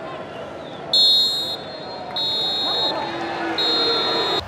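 Referee's whistle blown three times for full time: three high, steady blasts of under a second each, the first the loudest.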